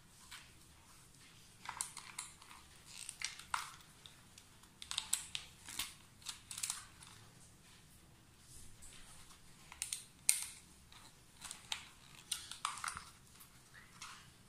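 Hands and a screwdriver working at the terminals of a plastic single-phase RCCB while rewiring it: quiet, irregular clusters of small clicks, scrapes and rustles of wire.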